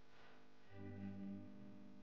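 Faint background music on a guitar with effects, its stronger low notes coming in a little under a second in.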